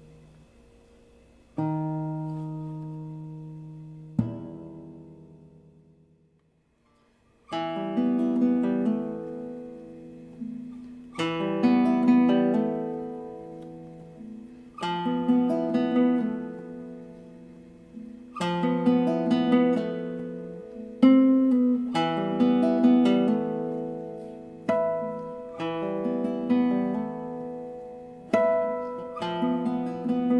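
Two nylon-string classical guitars played as a duo. A few sparse chords ring out and fade to a silence of about a second and a half, then the next movement begins with plucked chords and arpeggios in repeated phrases.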